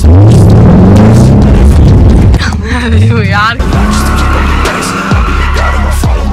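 Ford Mustang GT's 5.0-litre V8 accelerating hard, its pitch rising in several quick sweeps as it climbs through the gears, then a steady high tyre squeal over the last two seconds.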